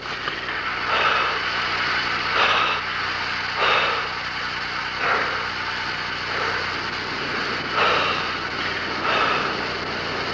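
Rhythmic breathing through a respiratory mouthpiece and hose during a bicycle ergometer exertion test, a puff of breath roughly every second and a half, over a steady low hum.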